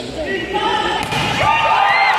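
A volleyball being struck, two sharp thuds about a second apart, followed by players and spectators shouting as the rally plays out.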